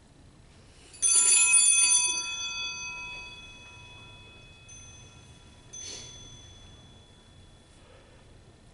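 Altar bells rung at the priest's Communion: a sudden jangling ring about a second in that lasts about a second and fades slowly, then a second, shorter ring near the end.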